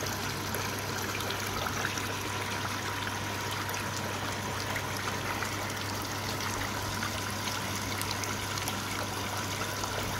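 Water running and trickling steadily into a koi pond, over a low steady hum.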